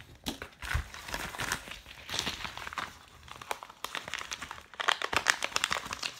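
Plastic bubble mailer crinkling and rustling as it is tipped up and shaken, with small parts dropping out onto a wooden table in scattered clicks. There is a soft thump about a second in, and the crinkling gets busier near the end.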